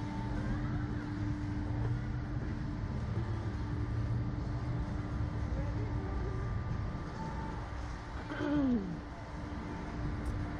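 A steady low mechanical rumble with a steady hum, the rumble easing off about seven seconds in; a person clears their throat near the end.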